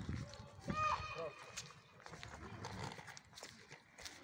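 A brief high-pitched vocal call, rising and falling, about a second in, over faint outdoor background noise.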